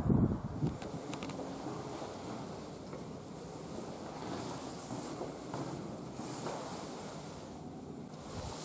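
Faint steady rushing noise with no distinct events, after a brief louder moment right at the start.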